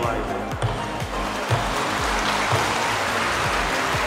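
A hall audience applauding, the clapping building up over the first couple of seconds, over background music with a steady beat.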